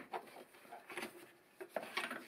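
Faint, scattered clicks and rubs from gloved hands working rubber hoses and a plastic quick-connect plug in a car's engine bay.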